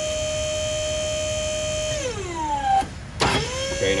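Electric motor of a battery-powered KTI double hydraulic pump running with a steady whine, driving a gravity-tilt cylinder out. About two seconds in it winds down with a falling pitch. A sharp click follows, and the motor starts again with a quickly rising whine that settles to a steady run.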